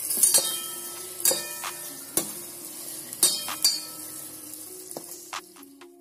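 Onions and tomatoes sizzling in a stainless-steel pan while a spatula stirs spice powders in, scraping and knocking against the pan about once a second. The sizzle fades away near the end.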